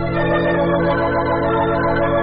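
Organ music bridge between scenes of a radio drama: the organ holds a sustained chord of several steady notes.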